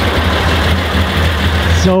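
Nissan Skyline Kenmeri engine idling steadily and loud, right after being started and revved. Its exhaust note sounds to onlookers like that of an engine with individual throttle bodies.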